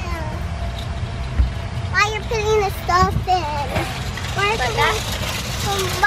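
Young children's voices chattering in short high-pitched bursts over a steady low rumble.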